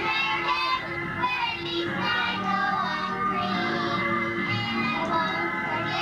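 Music with children singing, over a steady instrumental accompaniment with held tones.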